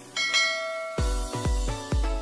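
A bright bell chime, the notification-bell sound of a subscribe-button animation, rings out just after the start and fades by about a second in. An electronic music track then comes in with deep bass kicks about three times a second.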